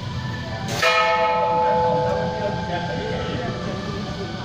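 A temple bell struck once, about a second in, ringing on and slowly fading over the next couple of seconds, over the murmur of people in the hall.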